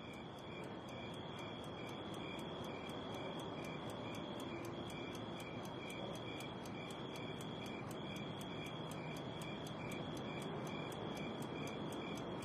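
Night-time crickets chirping faintly: a steady high trill with regular chirps about four times a second, over a low hiss.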